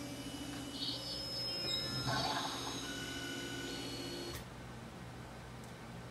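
Novation Supernova II synthesizer playing held electronic drone tones: a low warbling tone under higher tones that come in and out as the panel controls are turned. The sound cuts off suddenly about four and a half seconds in, leaving only a faint hiss.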